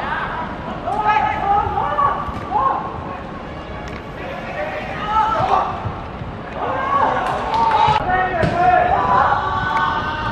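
Teenage footballers shouting calls to each other across the pitch in short bouts, with a few sharp thuds of the football being kicked, most of them near the end.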